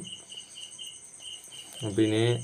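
Insects chirping: a quick, even run of short high-pitched chirps, several a second.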